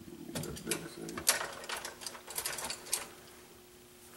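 A rapid, irregular run of small clicks and clattering from hard objects being handled, lasting about three seconds.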